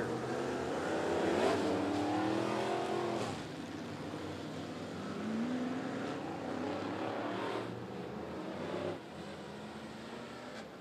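Dirt late model race cars' V8 engines running as the field circles slowly before the green flag. The engine note is loudest and rises in pitch in the first three seconds as cars pass close, drops off, then rises again gently about halfway through.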